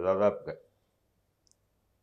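A man speaking for the first half second, his words ending in a sharp click, then near silence with a tiny tick about a second later.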